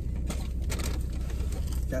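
Steady low hum of a car cabin with the engine idling. A few short clicks and rustles come in the first second, from cups and food being handled.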